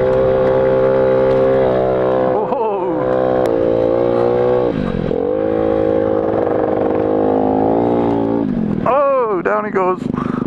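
A small motorcycle engine running at steady revs. The pitch dips briefly about five seconds in and drops off again near the end, where voices shouting or laughing break in.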